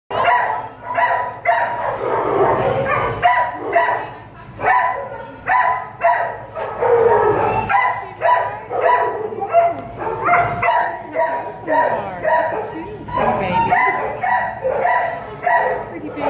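Dogs barking over and over in a tiled shelter kennel, about one to two barks a second, each bark echoing off the hard walls.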